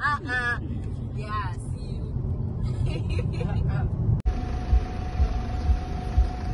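Laughter in the first moment, then steady low road noise and engine rumble inside a moving car's cabin. A sudden cut about four seconds in gives way to a different low rumble with uneven thuds and a faint steady hum.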